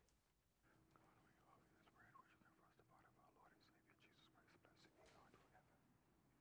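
Near silence: room tone with faint whispered speech, and a faint steady hum under it.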